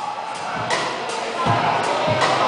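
Live rock band playing, the drum kit keeping a steady beat with cymbal hits about three times a second and kick-drum thumps underneath.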